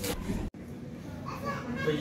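Indistinct voices and room noise, broken off abruptly about half a second in, after which voices rise again.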